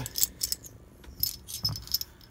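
7×57 mm brass rifle cartridges clinking against each other and their stripper clips as they are handled and set down. The sound is a handful of light, irregular metallic clicks.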